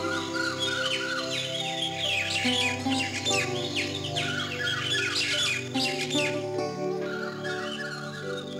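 Background music of held, sustained notes, with many quick downward-sweeping bird chirps over it that are thickest in the middle.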